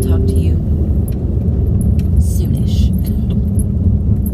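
Car cabin noise while driving: a steady low rumble from road and engine, with occasional light clicks and rattles.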